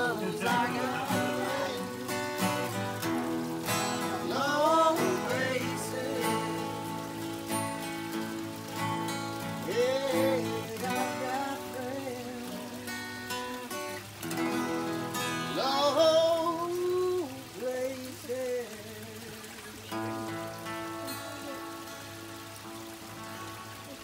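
Two acoustic guitars strumming together, with a man's voice rising and falling over them in places without clear words. After about twenty seconds the playing softens to quieter, ringing chords.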